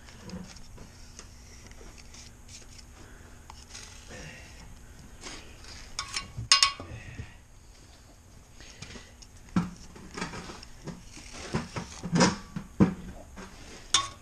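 Metal tools and parts clinking and knocking while a truck wheel hub is being worked on, with scattered light knocks and one sharp, ringing metal clink about six and a half seconds in.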